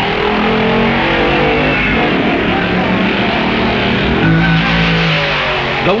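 Soundtrack music led by guitar, playing a run of held notes that step up and down, over a steady noisy bed.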